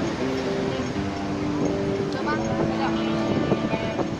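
Street noise at a busy crossing: traffic running and people talking, under steady background music.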